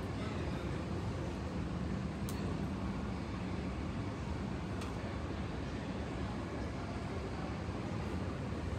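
Steady low rumble of airport apron noise (aircraft and ground-service vehicles) heard from inside the terminal through the window glass, with two faint clicks about two and five seconds in.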